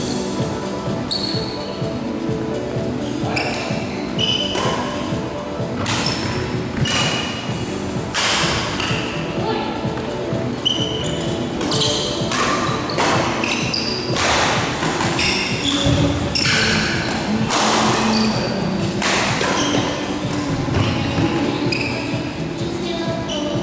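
Badminton doubles rally in a large, echoing hall: sharp racket strikes on the shuttlecock at irregular intervals of a second or two, with many short, high squeaks of shoes on the court floor. Music plays steadily underneath.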